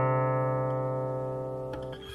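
Guqin (seven-string zither) in a slow passage: a plucked note rings on and slowly fades away, with a faint pluck near the end.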